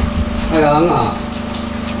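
A man's voice amplified through a microphone and PA system, one short phrase about half a second in, over a steady low hum.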